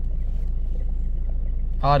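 A vehicle engine idling, a steady low drone heard inside the cab, with a word of speech at the very end.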